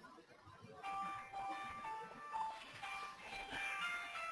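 Mobile phone ringtone playing a simple electronic melody, starting about a second in: an incoming call.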